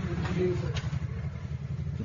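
A pause in a man's speech, filled by a steady low background rumble like a running engine, with a brief faint bit of voice early on and a small click about three quarters of a second in.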